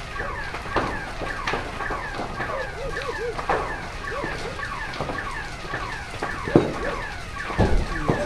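A building fire with scattered sharp pops, the two loudest near the end. Under it a car alarm sounds, cycling through quick repeating falling chirps and rise-and-fall whoops.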